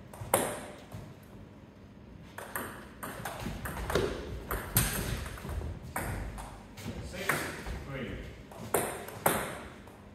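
Table tennis ball clicking off bats, table and the wooden floor: sharp ticks at uneven spacing, ringing briefly in a large hall.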